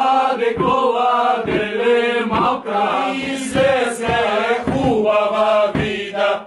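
A group of koledari singing a Bulgarian Christmas carol (koleda) together, in long held notes phrase by phrase.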